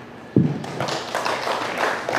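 A handheld microphone set down on a table, giving a sudden thump about a third of a second in, followed by a patter of light clapping.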